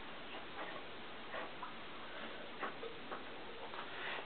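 A few faint, irregularly spaced clicks and taps of hands adjusting the wiring and controls of a bench electrical rig, over a low steady background hiss.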